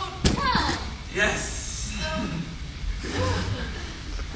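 A single sharp thump about a quarter-second in, followed by indistinct talking voices.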